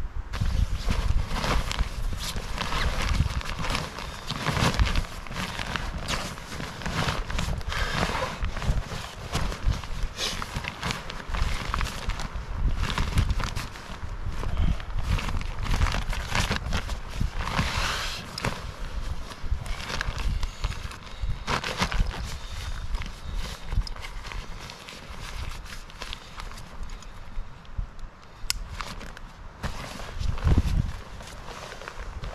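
Handling noise of camping gear being packed by hand: a nylon stuff sack and an inflatable sleeping pad rustling and crinkling, with irregular knocks and shuffles on the ground. It is busiest through the first two thirds and quieter near the end.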